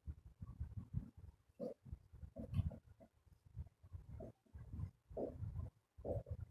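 Marker pen writing on a whiteboard, heard as faint, irregular low bumps and rumbles with a few short squeaks as the strokes are drawn.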